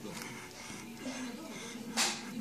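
Faint background music with voices, from a television playing in the room.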